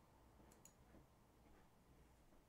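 Near silence: room tone, with two faint computer mouse clicks close together about half a second in.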